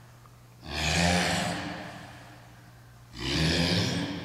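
A person's forceful exhalations, one hard breath out with each upward dumbbell punch, heard twice about two and a half seconds apart, each trailing off over a second.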